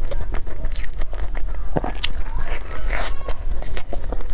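Close-miked chewing and crunching of a crisp-shelled baked cheese tart, with a run of sharp crackles that is busiest about two to three seconds in.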